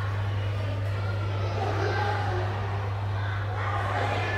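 Steady low hum with faint, indistinct voices of people in the background.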